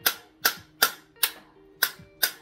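Steel screwdriver striking the tip of an extended expandable baton: five sharp metallic smacks, about two or three a second, each followed by a brief ring. It is being hit hard to knock the baton closed, and it is not collapsing.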